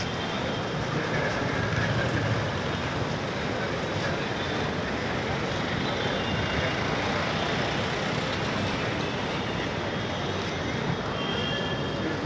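Steady outdoor vehicle noise, most likely a fleet of motor scooters and motorcycles idling together, an even rumble with no clear rhythm or change.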